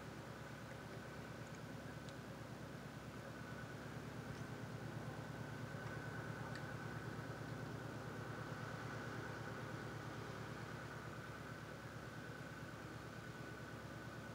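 A faint, steady mechanical hum with a thin, high steady whine over it, like a motor or fan running.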